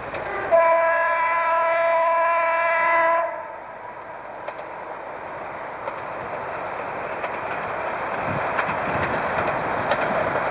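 Diesel multiple unit sounding one steady horn blast of about three seconds, starting about half a second in. It then approaches, its running noise slowly growing louder, with a few faint clicks.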